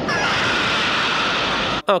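Movie sound effects of an airlock decompression: a loud, steady rush of escaping air with the alien queen's shrieks over it, cut off suddenly near the end.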